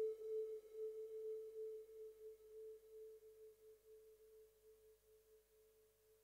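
The closing held synthesizer note of a trance track: one steady mid-pitched tone, pulsing a little under three times a second, fading out to silence.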